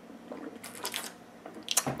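A person gulping water to wash down vitamin pills: a few soft swallows, with a louder one near the end.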